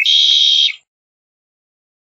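Red-winged blackbird song: the tail of a short rising opening note running into a harsh buzzy trill that lasts under a second and stops abruptly.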